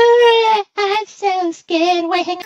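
High, childlike singing voice with no clear words: a held note that ends about half a second in, then a couple of short notes broken by abrupt gaps, and a slightly lower note near the end.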